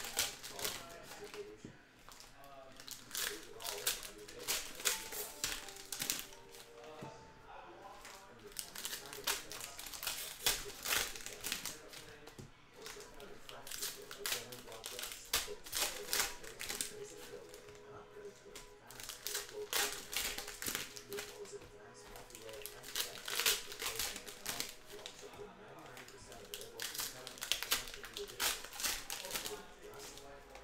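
Foil trading-card pack wrappers being torn open and crinkled in the hands, a dense, irregular run of sharp crackles, over background music.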